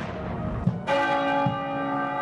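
A large bell struck once about a second in, ringing on with many steady, overlapping tones. Before it, the blast of a ceremonial field gun fired in salute dies away.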